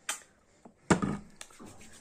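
A plastic squeeze bottle of hair styling cream dispensing into a palm, with a few small clicks and one sharp squelch about a second in, followed by hands rubbing the cream together.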